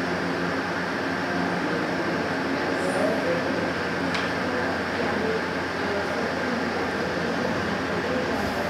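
Steady classroom room noise: a constant rushing hum with faint, indistinct voices underneath and a small tick about four seconds in.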